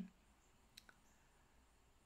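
Near silence: room tone, with one faint, short click a little under a second in.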